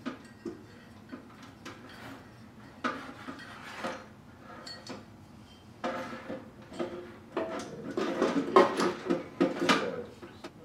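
Hands handling a plastic lamp-fixture housing while threading an electrical cord through it: scattered clicks, knocks and rustling, busier and louder in the last few seconds.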